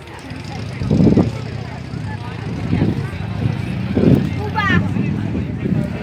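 A motor vehicle running with a steady low hum that grows louder from about a second in.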